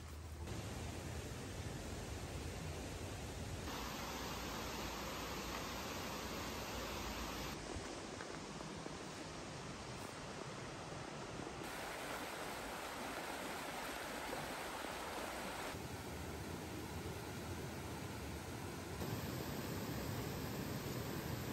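Steady rushing of a shallow, fast-flowing river, its tone and level changing abruptly every four seconds or so.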